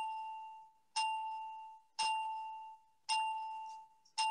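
A single bell-like chime note struck four times at a steady pace of about one stroke a second, each ringing and fading before the next: a clock striking the hour.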